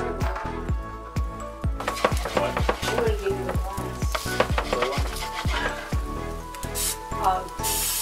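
Background music with a steady beat over French toast sizzling on an electric griddle, with a short hiss of aerosol cooking spray near the end.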